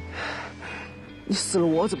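A man's gasping, sobbing breath, then he breaks into strained, tearful speech near the end, over soft background music.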